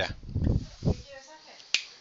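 Sheets of paper being picked up and handled, with a single sharp click near the end.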